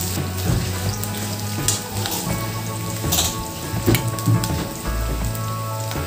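Chopped onions and green chillies sizzling steadily as they fry in hot oil in a non-stick pan, with a few short clicks. Background music plays underneath.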